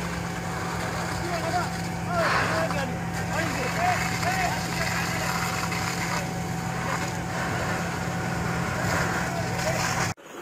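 A fire engine's pump motor running steadily with a low hum, under the hiss and rush of a high-pressure hose jet spraying water.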